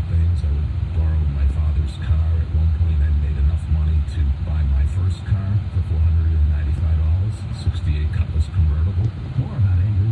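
Steady low rumble of a car driving, heard from inside the cabin, with indistinct talk and some music from the car radio underneath.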